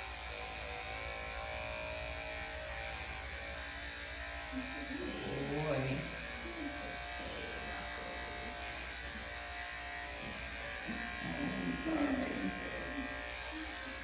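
Electric dog grooming clippers fitted with a #10 blade running with a steady hum as they shave a shih tzu's paw against the direction of the hair, cutting it as short as possible.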